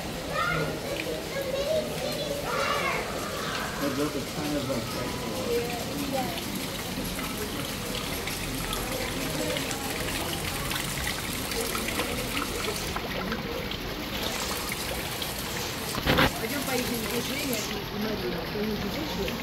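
Background chatter of visitors and children's voices over the steady trickle of small fountains, with one sharp knock near the end.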